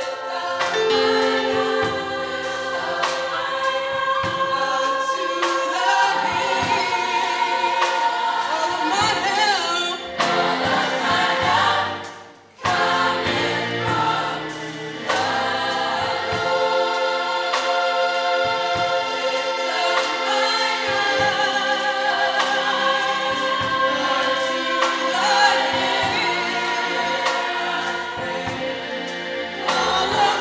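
Gospel choir singing in full voice, with a brief break about twelve seconds in before the singing picks up again.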